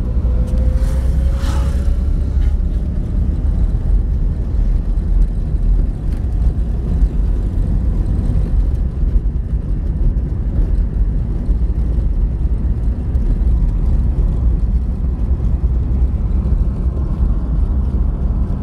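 Steady low rumble of a car driving along a highway, heard from inside the cabin: engine and tyre-on-road noise. A brief rise in hiss comes about a second in.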